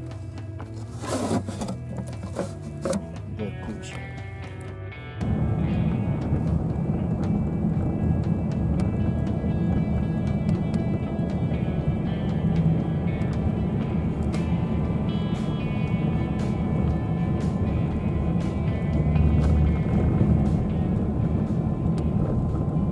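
Background music throughout. About five seconds in, a loud, steady low rumble of a car driving on a snow-covered road begins abruptly and continues under the music.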